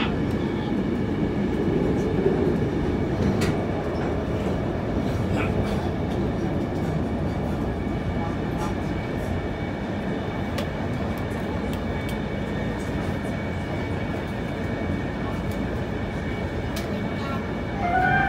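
Interior running noise of a New Taipei Metro Circular Line train on its elevated track: a steady rumble of wheels on rail with a faint steady high whine and a few light clicks, easing slightly toward the end.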